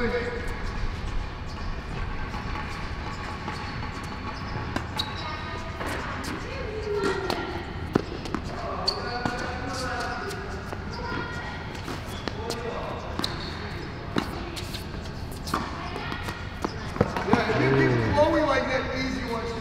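Tennis balls being struck with racquets and bouncing on an indoor hard court during a rally: irregular sharp pops throughout, with voices in the background.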